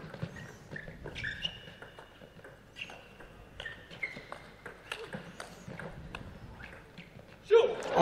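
Table tennis rally: the plastic ball clicks off rackets and table in a quick, uneven run of hits and bounces, and players' shoes squeak briefly on the court floor. Near the end a loud voice breaks in.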